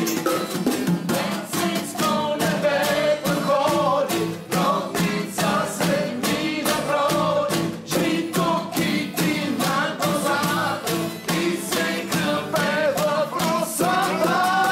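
Several voices singing a song together to a strummed acoustic guitar, with drums beaten with sticks in a quick, steady beat.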